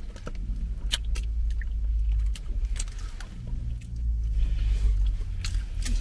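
Low, swelling rumble inside a car cabin, with a few sharp crunches and crinkles from a snack bag.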